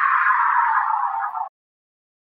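Electronic countdown-timer soundtrack ending on a falling sweep that glides down in pitch and cuts off suddenly about one and a half seconds in.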